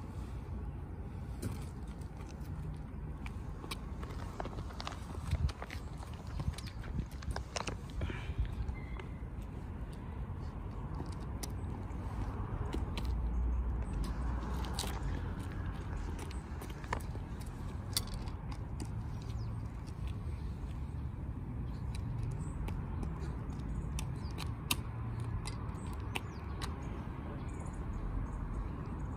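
Steady low outdoor rumble with scattered small clicks and scuffs from toddlers' shoes and hands on asphalt as they crouch and pick at small objects on the ground.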